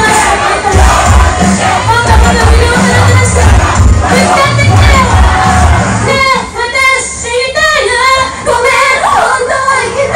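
Idol pop song performed live in a small club, loud through the PA with a heavy bass beat, while the audience shouts along. About six seconds in the bass drops back for a couple of seconds and the voices come to the fore.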